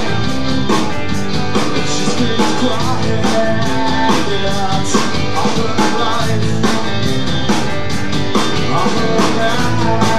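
Live rock band playing with two electric guitars, electric bass and a drum kit keeping a steady beat.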